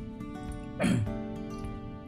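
Soft instrumental background music with held tones. Just before a second in, a short, louder sound drops quickly in pitch over it.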